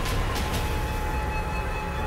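Background music: a sustained low drone under a steady held tone, with a couple of sharp percussive hits near the start.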